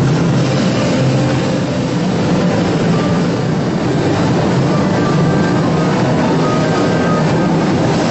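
Sanyō Shinkansen 500 series bullet train pulling out past the platform: a steady rush of train noise that does not let up.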